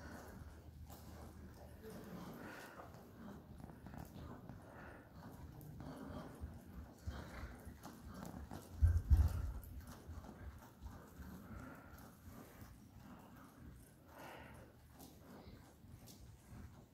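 Horse's hoofbeats on the sand footing of an indoor arena as it moves along at an easy pace, with a short low rumble about nine seconds in.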